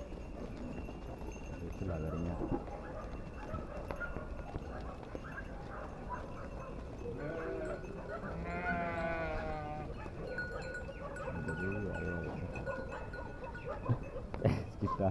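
A flock of sheep bleating: a few bleats, the longest and loudest a quavering bleat in the middle.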